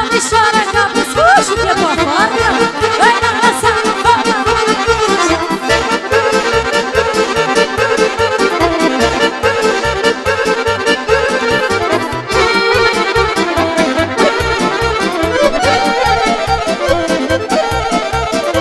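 Live dance music led by a Roland digital accordion playing fast, busy melodic lines over a steady, driving beat.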